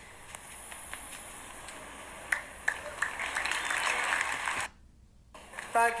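Congregation clapping faintly, an even patter that grows louder from about three seconds in, then cuts out abruptly for about half a second.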